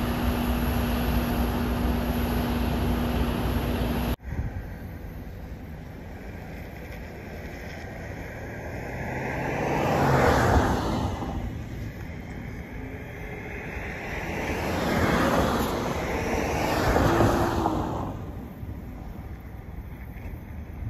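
A large truck's engine running steadily with a low hum. It cuts off abruptly about four seconds in and gives way to road vehicles driving past: three rushes of engine and tyre noise that swell and fade, the loudest about ten, fifteen and seventeen seconds in.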